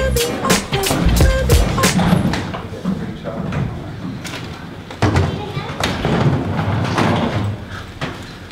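Background music with a strong beat that stops about two seconds in. Then come knocks and thumps of hard-shell suitcases being shoved into a hotel elevator, with a sudden bang about five seconds in and low voices.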